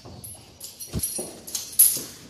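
A heavy cell door being pulled open: hinges squeaking in short high squeals, metal clanks and a deep thud about a second in.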